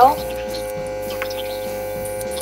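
A steady, unchanging hum of several held tones, the sustained drone of background music under the voice-over.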